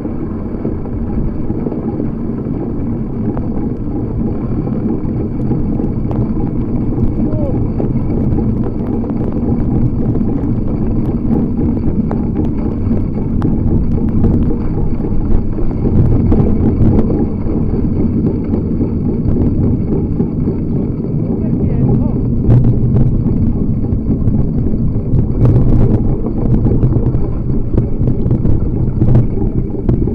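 Wind buffeting the microphone over the rumble of a bicycle rolling fast along a rough, partly snowy dirt trail, with a few sharp knocks and rattles as the bike jolts.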